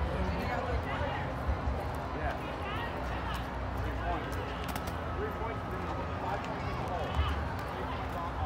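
Indistinct background voices and chatter of people around an outdoor game, over a low rumble, with a couple of faint short knocks.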